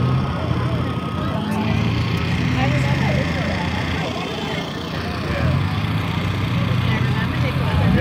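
Several cars' engines running at low speed on a grass field, a steady low hum that swells and eases, with voices chattering underneath.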